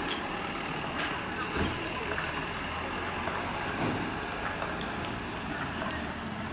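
A bus engine running steadily under a constant street noise.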